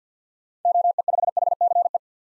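Morse code sent at 50 words per minute as a single-pitch beep keyed in rapid dots and dashes, spelling out an amateur radio callsign; it starts a little over half a second in.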